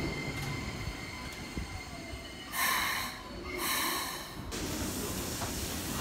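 Keikyu electric train rolling slowly into the platform and coming to a stop, with a steady low rumble. Two short bursts of air hiss come about two and a half and three and a half seconds in, from the brakes as it halts.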